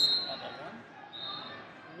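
Tournament hall ambience: distant voices murmur while brief, sharp, high-pitched squeaks or chirps sound, one right at the start and another just past the middle.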